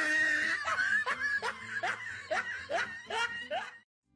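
Snickering laughter from cartoon cat characters, a run of short rising 'heh' sounds about three a second that stops just before the end.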